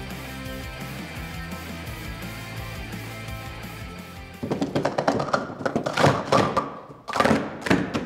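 Background music, then from about halfway a rapid clatter of plastic sport-stacking cups being stacked and unstacked on a table, in quick runs of clicks and taps.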